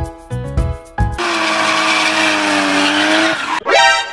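Upbeat intro music, then about a second in a loud screeching sound effect: a hiss with a steady held tone that sags slightly in pitch, like a car skidding. It cuts off into a short rising sweep near the end.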